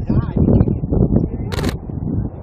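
People talking over a low rumble, with a quick burst of a camera shutter about one and a half seconds in.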